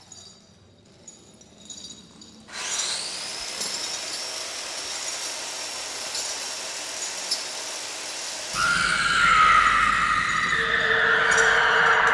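Horror sound-effect track: faint tinkling, then a sudden steady high hiss with a thin whistling tone about two and a half seconds in. It grows louder about eight and a half seconds in, with a squealing tone rising in pitch over a low rumble.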